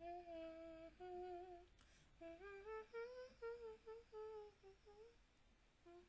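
A person humming a slow tune: two held notes, then after a short pause a phrase that rises and falls, starting again near the end.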